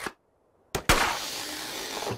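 Cartoon sound effect of an emergency kit deploying a staircase: a sharp pop about three-quarters of a second in, followed by a steady rushing hiss for about a second.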